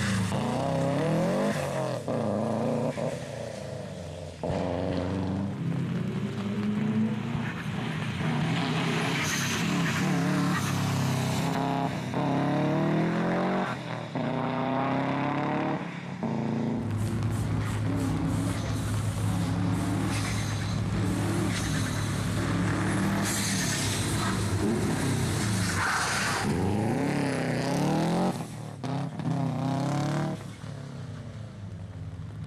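Rally cars driving hard past the spectator on a wet stage, engines revving up and dropping back through gear changes as each car accelerates out of the bends.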